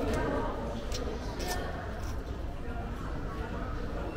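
A person slurping wide, hand-pulled biang biang noodles, with a few short slurps in the first second and a half, over a background of voices.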